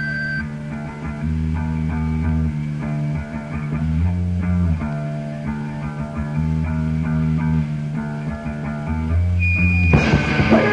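Rock band demo recording in a quieter passage: bass guitar holding long low notes under picked guitar, with the full band coming back in at the end.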